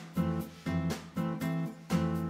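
Background music: an acoustic guitar strumming chords in a steady, bouncy rhythm.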